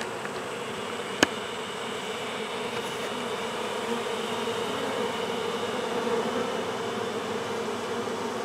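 Honeybees buzzing in a steady hum around the hive. One sharp click about a second in.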